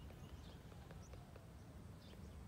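Near silence: faint background rumble with a few soft, scattered clicks.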